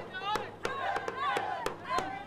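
A group of voices singing or chanting to sharp percussive beats, about three a second.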